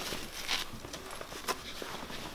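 Rustling and a few light knocks from a soft-sided mesh pet carrier as a small dog is pushed inside it, with two sharper clicks about half a second and a second and a half in.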